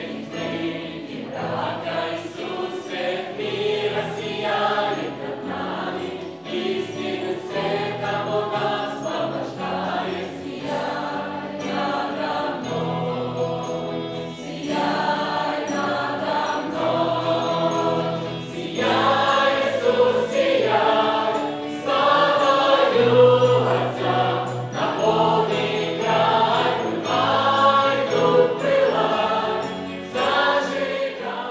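Background music: a choir singing a slow sacred song.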